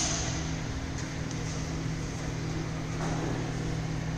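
Steady mechanical hum with a constant low tone over an even hiss, unchanging throughout.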